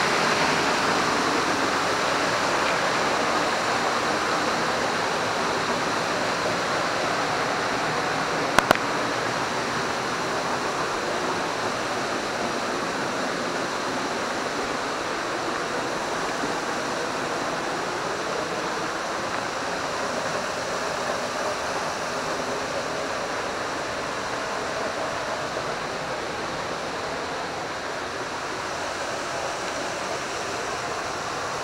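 Waterfall pouring off a rock ledge into a pool, a steady rush of falling water that slowly grows fainter. A single sharp click about nine seconds in.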